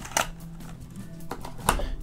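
Small cardboard box being handled and closed: two sharp clicks about a second and a half apart, the second as it is set down on the table.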